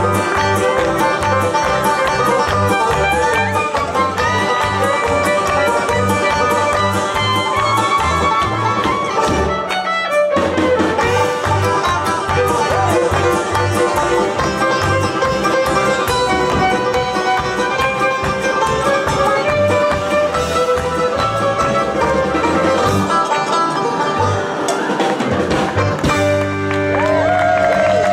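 Live bluegrass band playing a fast instrumental: banjo, fiddle and acoustic guitar over electric bass and drums keeping a quick steady beat. The band stops briefly about ten seconds in and then picks up again.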